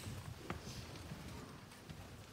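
Hushed concert hall before the music starts: faint audience murmur with a few scattered knocks and footsteps on the wooden stage, one sharp click about half a second in.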